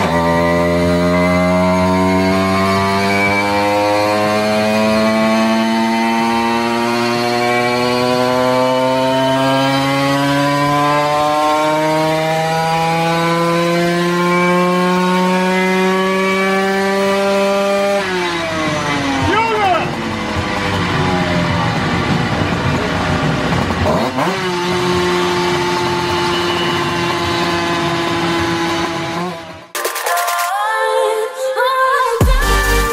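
Simson two-stroke single-cylinder moped engine on a chassis dyno, held wide open with its pitch climbing steadily for about 18 seconds as it runs up through the rev range during a power run. Then the throttle is shut, the revs fall away unevenly, and it settles to a steady idle for the last few seconds.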